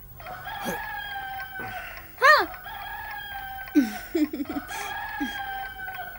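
A rooster crowing three times in a row, each a long drawn-out call. A man's short sleepy "haan" comes between the first and second crow.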